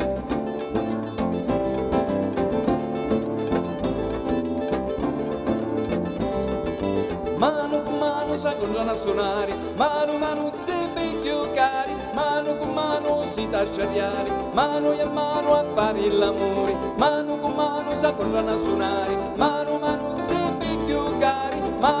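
Live band playing traditional Italian folk music in an instrumental passage: acoustic guitars, bass and percussion. A lead melody comes in about seven seconds in, its notes sliding up at the start of each phrase.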